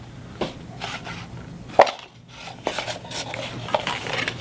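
Handling noise from a paper-cup wind-up toy: a paper clip hook and cardboard wheel being worked by hand, giving light scattered clicks and rustles, with one sharper click a bit under two seconds in.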